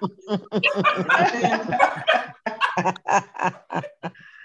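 Women laughing over a video-call connection, in quick repeated bursts.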